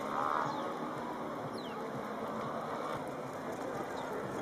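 Outdoor ambience: a steady rushing noise with a few short, high-pitched falling chirps spread through it.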